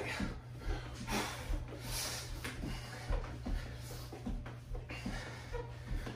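A man breathing hard through mountain climbers, with breaths about once a second, and his feet patting softly on the exercise mat.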